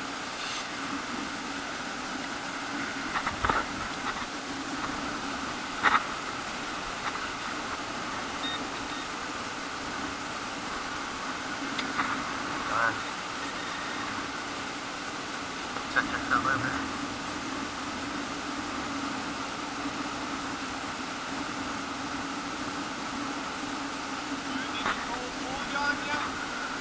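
A hand shovel digging into beach sand, making a few short scrapes and knocks about 3 to 4 seconds in, at 6 seconds, around 12 to 13 seconds and around 16 seconds, over a steady background hiss.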